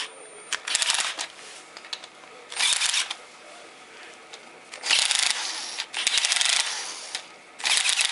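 Cordless screwdriver set to 10 N·m driving the oil pump's mounting bolts in several short bursts, its torque clutch ratcheting with a rapid clicking as each bolt reaches the set torque.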